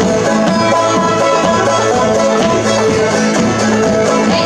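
Acoustic string band playing a bluegrass-style tune, with banjo, fiddle and acoustic guitars together over a steady rhythm.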